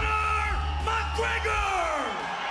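Soundtrack music: a voice holds long, wavering notes over a steady low bass drone, and the last note slides downward near the end.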